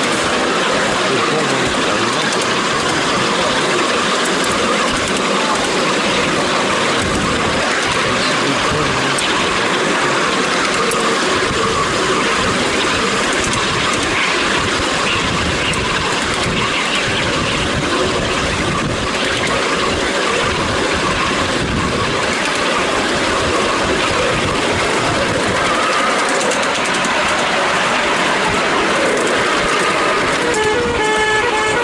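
Ride-on miniature Intercity 125 train running steadily along its track, heard from aboard: a constant rumble of wheels on rail and running gear, with wind on the microphone.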